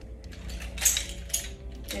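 Metal nunchaku's chain jingling and its metal sticks clinking as they are handled, with two sharper clinks a little under a second and about a second and a half in.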